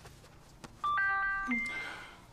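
Doorbell chime: two electronic tones about half a second apart, the second higher and ringing on as it fades.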